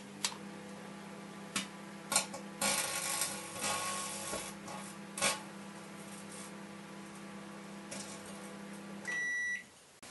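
Microwave oven running with a steady electrical hum while crumpled aluminium foil inside arcs, giving sharp snaps and a stretch of crackling from about two and a half to four and a half seconds in. Near the end the oven gives one beep as its ten-second cycle finishes, and the hum stops.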